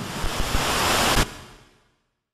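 Static-hiss sound effect, a dense rush of noise like an untuned TV. It breaks off about a second and a quarter in and fades quickly to silence.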